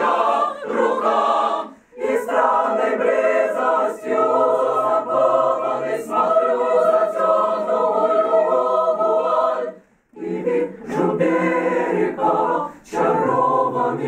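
Mixed choir of men and women singing a cappella in several parts, with a chord held for several seconds midway. The singing breaks off briefly about two seconds in and again about ten seconds in.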